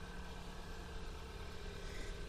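Hyundai ix35's two-litre four-cylinder engine idling: a steady, quiet low hum.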